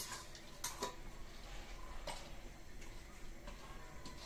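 A few light, separate clicks and taps as yellow split lentils are dropped by hand from a steel bowl onto a stone grinding slab, with the odd clink of the steel bowl.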